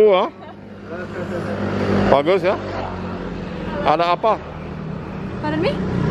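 A motor vehicle's engine running on the street close by. It grows louder over the first two seconds and then holds at a steady hum, with a few short spoken words over it.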